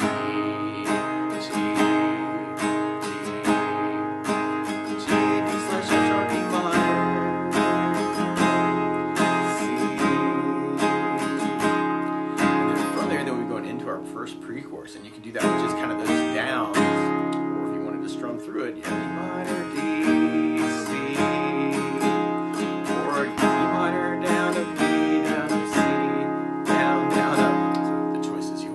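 Acoustic guitar with a capo on the first fret, strummed through a chord progression in a down, down, up, up, down, up pattern. There is a brief lull about halfway through before the strumming resumes.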